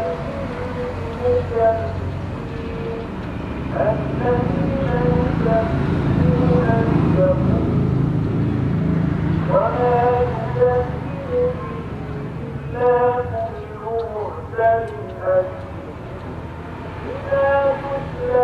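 Indistinct voices over a low rumble from a passing motor vehicle. The rumble builds about four seconds in and fades around ten seconds.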